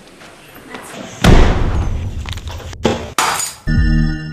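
Glass in a picture frame shattering: a sudden loud crash about a second in, with breaking glass running on for over a second. A second, shorter burst of breaking glass comes a little after three seconds.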